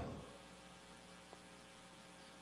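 Near silence in a pause between sentences of a speech: a faint steady electrical hum, with the end of a man's word dying away at the very start.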